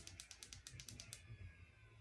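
Ring light's control buttons pressed repeatedly to step the brightness: a quick run of faint clicks, about eight a second, that stops just over halfway through.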